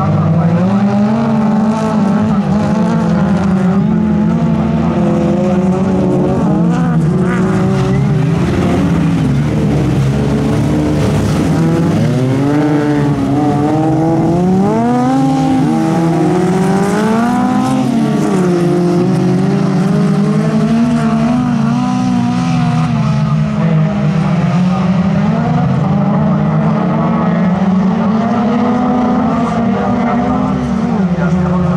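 Engines of several folkrace cars racing together, their notes repeatedly rising and falling as the drivers rev and change gear.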